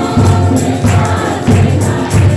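A congregation singing a Hindi worship song together, loudly, over a steady beat of hand clapping.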